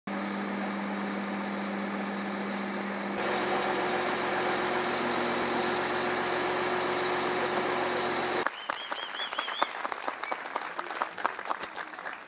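Crane truck's engine running steadily while it hoists a giant pumpkin on lifting straps, getting louder about three seconds in. After about eight seconds it gives way to a crowd clapping.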